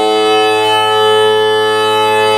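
Greek bagpipe playing steady held tones, the pitches barely moving.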